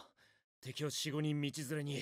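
Only speech: a man's voice speaking a line of Japanese anime dialogue.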